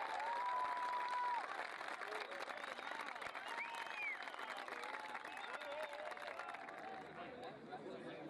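Rugby spectators shouting and clapping, with a long held shout about half a second in; the noise gradually dies down.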